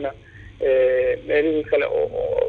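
Speech only: a voice talking with a narrow, phone-like sound, after a brief pause at the start.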